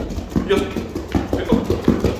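Feet thudding quickly on a foam training mat during a fast hopping and knee-lift footwork drill, about five short thuds a second, with a man counting aloud in Korean.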